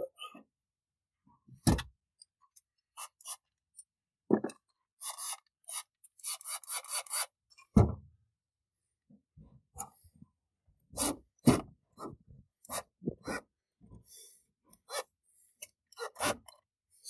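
Scattered knocks and clicks with clusters of short rasping, scraping bursts: hand and tool work on an Infiniti G37 convertible's top finisher flapper mechanism to get the flapper to move.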